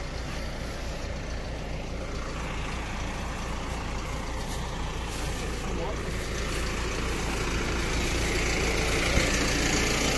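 Backhoe loader's diesel engine idling steadily in the background.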